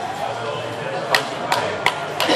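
A few scattered hand claps as the match ends: three sharp claps about a third of a second apart in the second half, over hall chatter.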